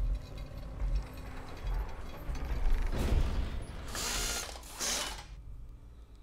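TV drama soundtrack: a creature growling over mechanical ratcheting and clanking, with two loud rushes of noise about four and five seconds in before the sound drops away.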